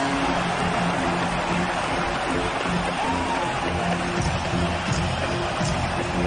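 Arena goal-celebration music playing over a cheering crowd after a home-team goal, in short repeated notes. A long held horn tone ends just after the start.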